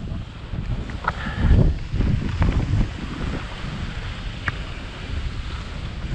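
Wind buffeting an action-camera microphone while skiing downhill, with the hiss and scrape of skis on packed snow. It surges louder around a second and a half in, and there are a few faint clicks.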